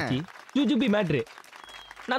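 A man's voice speaking in two short, animated phrases with strongly rising and falling pitch, over a crowd clapping in the background.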